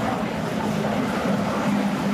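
A steady low background hum with a constant low drone and no distinct events.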